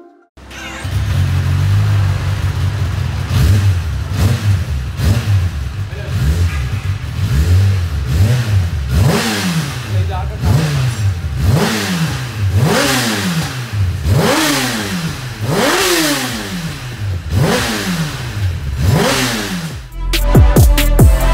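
Kawasaki ZX-10R's inline-four engine through its stock exhaust, idling and then blipped repeatedly, the revs rising and falling about once a second through the second half.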